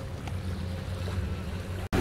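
Steady low rumble of wind and water aboard a power catamaran, with a faint hum underneath; the sound breaks off for an instant near the end.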